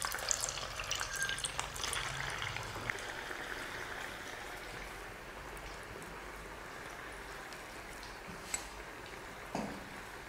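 Rice-flour vadas deep-frying in hot oil: a steady sizzle with fine crackling, busiest in the first few seconds and settling to a softer hiss. A sharp tick and a short light knock come near the end.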